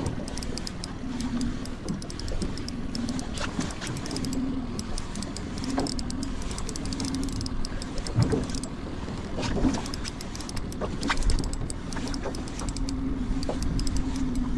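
A spinning reel is worked while a hooked fish is played on a tight line, heard over a steady low hum with wind on the microphone. Irregular sharp clicks and taps run through it.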